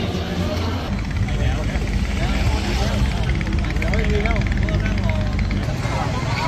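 Many people's voices chattering outdoors, over a steady low rumble that sets in about a second in.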